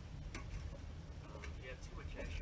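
Metal fireplace shovel tapping and scraping on a perforated metal ash sifter over a metal bucket while sifting wood-stove ash: one sharp clink about a third of a second in, then a cluster of small clinks and scrapes near the end, over a steady low hum.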